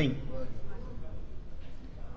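A man's voice ends a word at the very start, followed by a pause in speech that holds only faint, steady low room noise picked up through the microphone.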